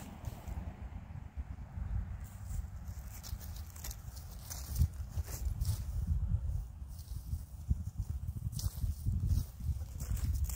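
Wind buffeting the microphone, an uneven low rumble, with a couple of short clicks about halfway and near the end.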